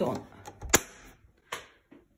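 Modular circuit breaker in a household electrical panel switched off by hand with one sharp click, cutting power to the lighting circuit; a softer knock follows about half a second later.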